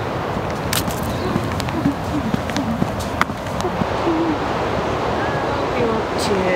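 A steady rushing noise, with a few light clicks and some faint, brief low-pitched sounds.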